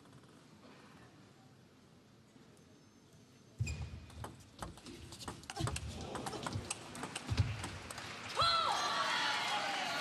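Table tennis rally: the ball clicking rapidly off bats and table, with thumps of the players' footwork on the court floor, starting suddenly about three and a half seconds in. Near the end the point is won and a shout and crowd cheering rise over it.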